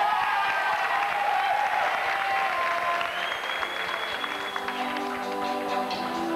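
Audience applauding, with music coming in over it about two-thirds of the way through.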